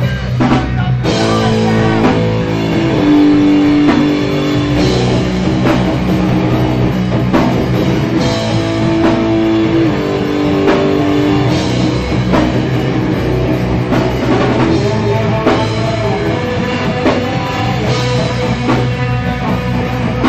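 Punk band playing live: distorted electric guitars, bass and drum kit, with the full band coming in about a second in and playing on without a break.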